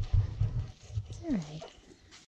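One short moo that falls in pitch and levels off, about a second and a half in, after a second of low thumping rumbles close by.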